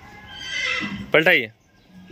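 A horse whinnying: a high call lasting well under a second near the start, then a man's short spoken word.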